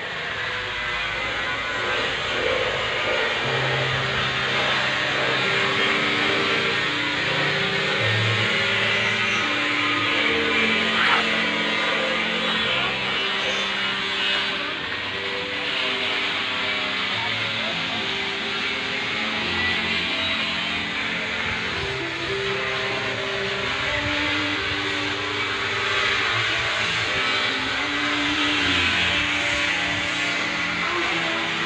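Background music with held, changing notes at a steady level.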